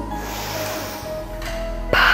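Background music, with a deep breath drawn in through the nose during the first second: the nasal inhale of bodyflex diaphragmatic breathing. There is a short click just before the end.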